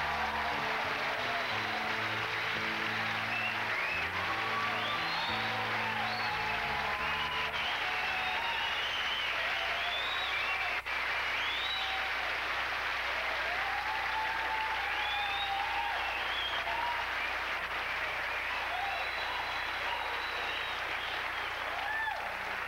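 Studio audience applauding steadily, with cheers and whistles rising above the clapping. The studio band plays under the applause for the first several seconds, then stops.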